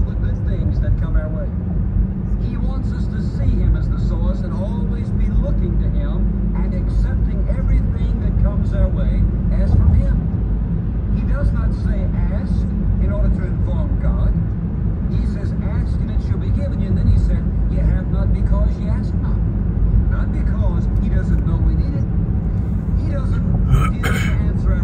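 Road and engine noise heard inside a moving car's cabin: a steady low rumble, with faint talk running underneath.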